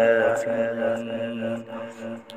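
Quran recitation (tilawat): a solo reciter's voice holding one long, drawn-out melodic note that fades near the end.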